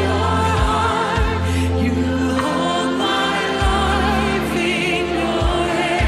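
Christian worship song: voices singing with vibrato over sustained bass notes that change every second or two.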